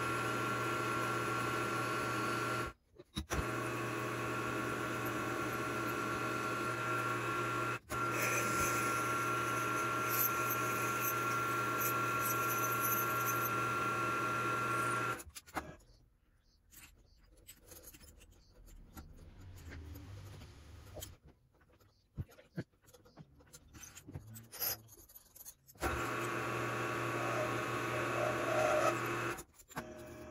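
Benchtop milling machine's motor and spindle running with a steady whine, shutting off about halfway through. Quiet clicks and handling noise of hands working at the drill chuck follow, then the machine runs again for a few seconds near the end.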